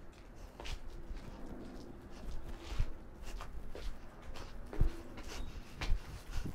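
Feet shuffling and stepping on a concrete patio during a dance move, with a few sharper thumps.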